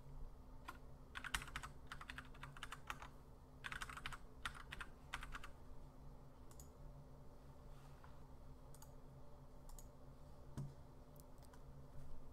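Faint computer keyboard typing: short bursts of keystrokes over the first five seconds or so, then only a few scattered clicks, over a low steady hum.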